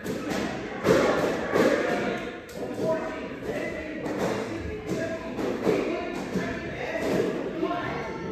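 Children's kicks and punches landing on handheld taekwondo target pads: a series of thumps, the loudest about a second in, with children's voices among them.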